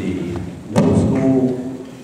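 A man speaking into a podium microphone in a large hall, with a single sharp thump on the microphone about three quarters of a second in.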